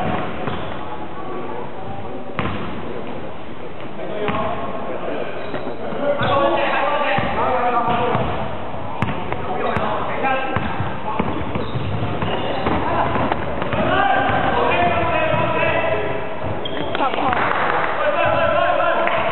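A basketball being dribbled and bounced on a hardwood gym floor during play, in a large indoor sports hall, with players' voices shouting and talking over it much of the time.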